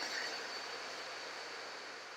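Steady faint hiss of room tone with a thin high tone running through it, and no other events.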